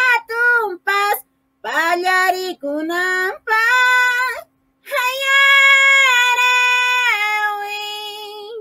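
A woman singing a cappella in a high voice, a yaraví (an Andean sowing-season song): short quick syllables, then a long held note from about five seconds in that drops a step near the end and fades.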